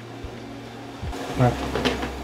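Steady low hum of room noise in a garage workshop, with a man saying a single short word a little over a second in.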